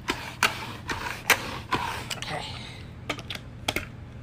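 ChomChom pet-hair roller worked over carpet: irregular sharp plastic clicks from its rolling mechanism and housing, about ten in all.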